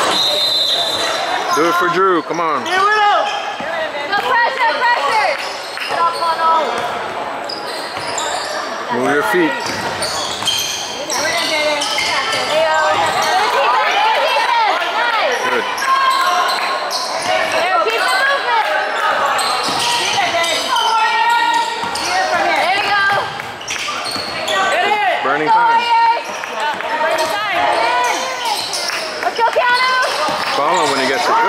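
Live basketball game sound in a gym: the ball bouncing on the hardwood court, sneakers squeaking, and indistinct calls from players and spectators, echoing in the hall.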